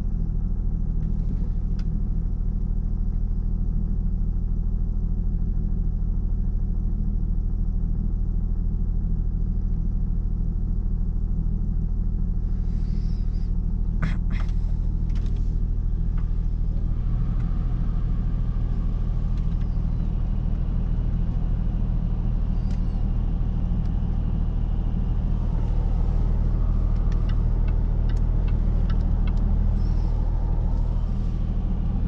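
Jaguar XF 3.0-litre twin-turbo V6 diesel idling steadily just after a cold start, warming up so the oil can circulate, heard from inside the cabin. A couple of brief clicks come about fourteen seconds in, and a few light ticks near the end.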